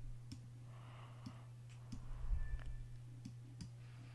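Faint, scattered computer mouse clicks, about six over a few seconds, over a steady low electrical hum, as a photo is being cropped on screen.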